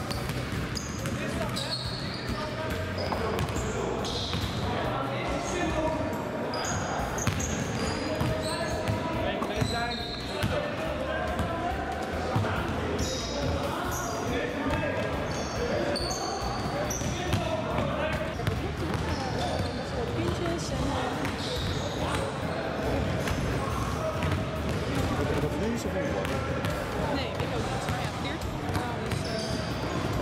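Several basketballs bouncing on a wooden sports-hall floor during dribbling drills, many sharp bounces overlapping, with indistinct voices throughout.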